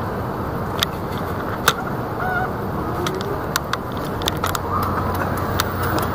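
City street traffic noise: a steady rumble of engines and tyres, with irregular sharp clicks and a few short squeaky glides.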